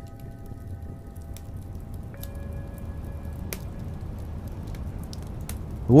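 Quiet ambient background music: a low steady drone with a few held tones, which give way to a new set about two seconds in. Sparse small crackles and pops of a burning log fire sound over it, one sharper pop near the middle.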